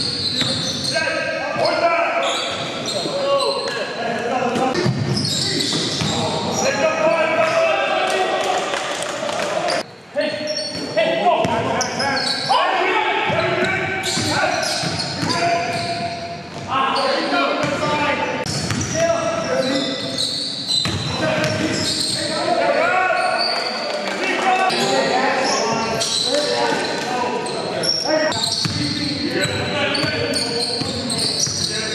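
Basketball being dribbled on a hardwood gym floor during play in a large gym hall, with indistinct players' voices and calls.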